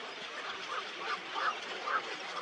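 A bird giving a series of four short calls, about two a second, the later ones louder, over a steady background hiss.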